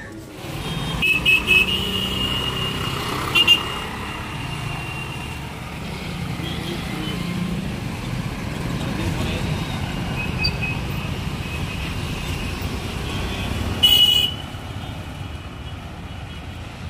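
Road traffic passing: motorbike and car engines and tyre noise, with short high-pitched horn toots about a second in, again at about three and a half seconds, and a louder one near the end.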